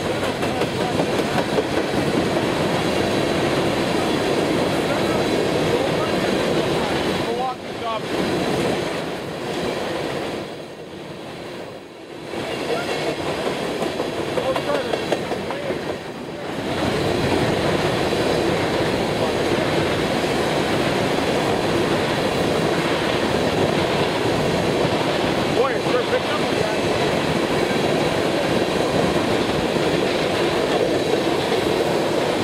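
Empty coal hopper cars of a freight train rolling past close by: a steady rumble and clatter of wheels on the rails. It eases off for several seconds in the middle and then comes back at full level.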